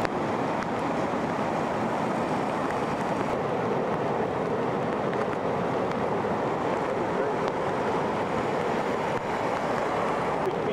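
Fast-flowing floodwater rushing past, a steady, unbroken wash of water noise.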